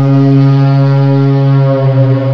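A loud, low horn-like drone held at one pitch, opening the intro soundtrack.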